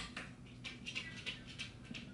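Faint, quick soft ticks and patter, several a second, from a small pet moving about close by.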